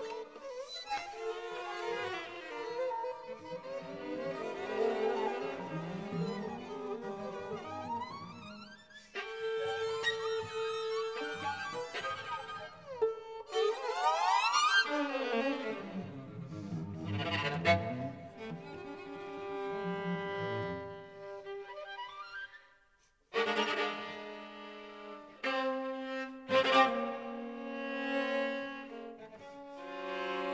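String quartet playing contemporary music: held notes and sliding glissandi, with rising glides about 13 to 15 seconds in. It breaks off briefly about 9 seconds in and drops almost to silence about 23 seconds in before coming back with louder sustained chords.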